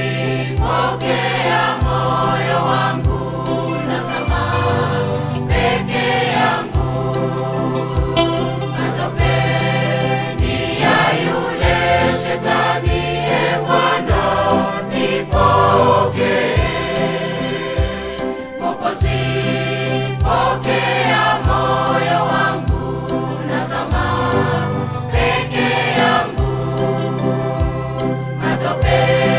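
Choir singing a Swahili gospel song in parts over a studio backing track, with a sustained bass line and a steady beat.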